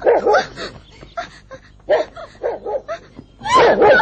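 A dog barking and yelping in a string of short calls, with a longer, louder one near the end.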